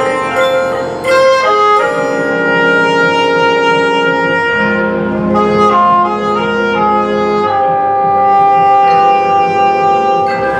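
Marching band playing sustained brass and woodwind chords that move to new chords every few seconds.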